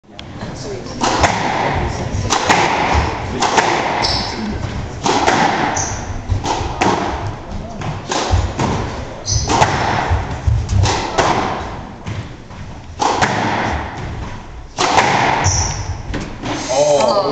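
A squash rally: the rubber ball is struck hard by the rackets and smacks off the court walls in a fast exchange of sharp hits about every second, ringing in the court. Between the hits come short squeaks of court shoes on the wooden floor.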